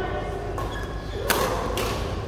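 Two sharp badminton racket strikes on a shuttlecock, about half a second apart, the first the louder, over faint background voices.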